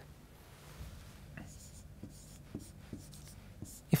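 Faint scratching of a marker writing on a board: a run of short strokes starting about a second in, as a word is written and underlined.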